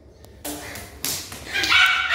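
Small dog barking in short high-pitched calls, after a burst of rustling handling noise about half a second in.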